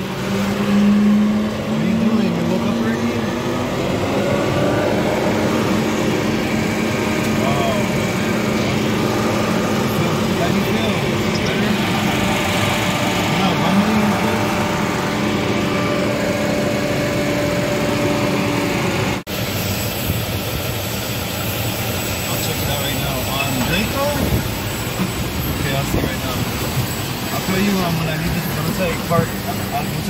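Steady hum of idling vehicle engines or machinery with indistinct voices in the background. It breaks off abruptly about two-thirds of the way through, and a busier mix of engine noise and voices follows.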